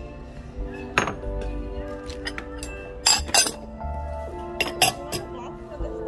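Ceramic dishes clinking against each other as they are handled and lifted out of a shopping cart. There is a sharp clink about a second in, a quick cluster around three seconds in and another just before five seconds, all over steady background music.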